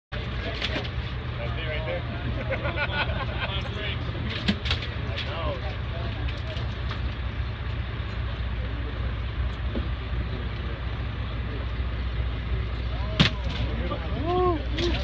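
A fishing boat's engine running with a steady low drone, under indistinct voices of people on deck. A couple of sharp knocks, the loudest near the end as the landing net comes aboard onto the deck.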